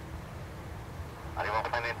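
Low, steady rumble of a distant twin-engine widebody jet airliner on the runway, with a man starting to speak in Italian near the end.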